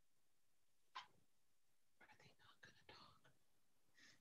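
Near silence with a single faint click about a second in, then faint, barely audible whispered or distant speech for about a second in the second half.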